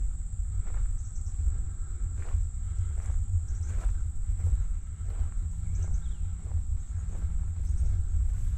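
Wind buffeting the microphone, a low uneven rumble, under a steady high-pitched drone of insects in the summer grass. Faint footsteps tap about once every three quarters of a second.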